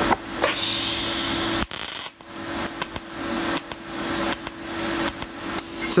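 TIG welding arc putting a fusion tack on thin-walled bicycle tubing, no filler rod: a hissing burst about half a second in that lasts about a second, over a steady hum that stops about five seconds in, with scattered small clicks.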